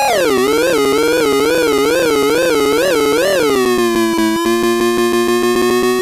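Circuit-bent toy typewriter's buzzy electronic tone: its pitch drops at the start, wobbles up and down about twice a second, then settles a little past halfway into a steady low drone that slowly rises as the pitch knob is turned.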